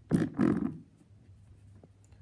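A man's short throat noise, a cough-like sound in two quick bursts near the start.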